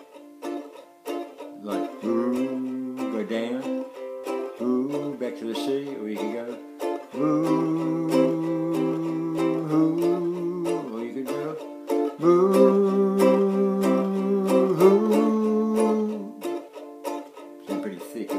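A man sings wordless, drawn-out notes over a steadily strummed stringed instrument, trying out melody notes for a tune. Two long held notes come about seven and twelve seconds in, with shorter phrases before them.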